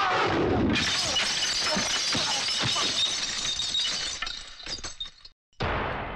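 Glass shattering in a film fight: a sudden crash about a second in, then pieces tinkling and falling for a few seconds before dying away. After a brief silence, a ringing hit comes in near the end.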